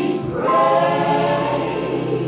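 Gospel song with a choir singing held notes; a new sung phrase swells in about half a second in.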